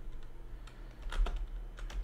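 Computer keyboard being typed on: a few separate keystrokes in short clusters.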